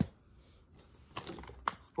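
A few sharp plastic clicks and knocks, a second or so apart, from DVD cases being handled while a DVD caught on a VHS rewinder's cord is pulled free.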